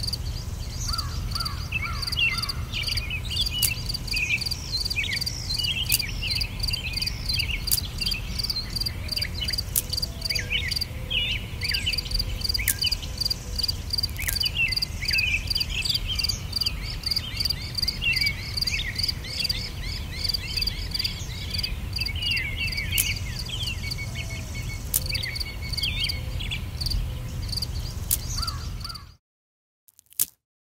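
Woodland birdsong: several birds chirping and singing in short rising and falling notes, with a high, rapidly repeated call running through it over a steady low rumble. It cuts off suddenly near the end.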